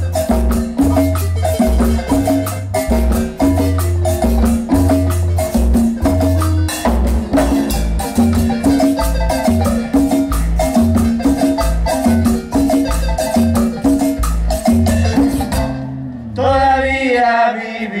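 Live marimba ensemble playing a danzón: marimba melody over electric bass, drum kit, congas and a metal güiro scraper keeping a steady beat. The piece ends about two seconds before the close.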